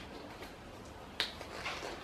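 A single sharp snap about a second in, of a blue nitrile glove being pulled onto a hand, against quiet room tone, followed by a couple of faint rustles.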